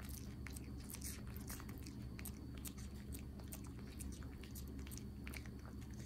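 A Chihuahua puppy chewing a crunchy treat: a run of quick, irregular, crisp crunches.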